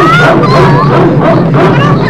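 Cartoon animals yipping and whimpering in a quick run of short, high, sliding calls, over a steady low hum of score.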